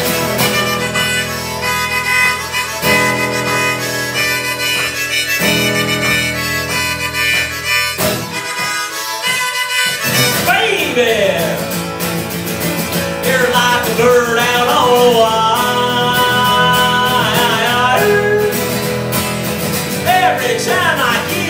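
Harmonica solo over strummed acoustic guitar in an instrumental break. The harmonica holds steady chords at first, then about halfway through plays bending, wavering notes that slide up and down.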